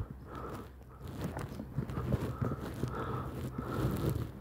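Faint rustling and scattered small clicks of a handheld phone being moved about outdoors, with no voice.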